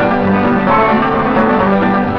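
Country band music with a plucked banjo, an instrumental stretch between sung lines of the song.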